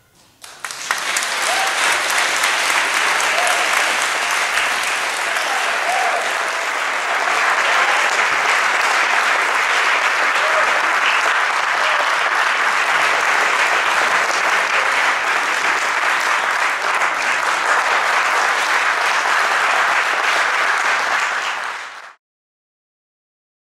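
Audience applauding steadily, starting about half a second in, with a few voices over the clapping; it cuts off abruptly at the end.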